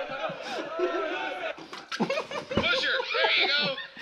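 Stifled giggling from people trying to hold water in their mouths, mixed with indistinct voices from a fail video playing.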